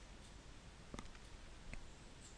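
Near silence: faint room tone with two small clicks, one about a second in and a fainter one near the end.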